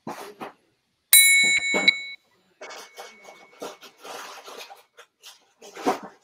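A metal triangle struck once about a second in, ringing with several high bright tones that fade over about three seconds, with a couple of light extra taps close after the strike.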